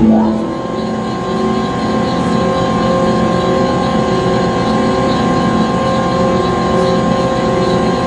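Conveyor belt machinery running: a steady mechanical hum with several constant whining tones and a faint recurring pulse.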